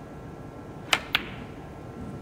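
Snooker cue tip striking the cue ball, then the cue ball clicking against a red: two sharp clicks about a quarter of a second apart, a little under a second in, over the low hush of the arena.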